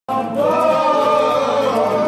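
Live Greek folk music with voices singing a slow, drawn-out melody, accompanied by clarinet and violin.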